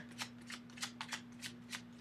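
Tarot cards being shuffled by hand: a quick series of light card snaps, about four or five a second.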